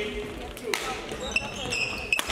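A badminton rally in a sports hall: a sharp racket strike on the shuttlecock, then shoes squeaking on the court floor, with voices in the background.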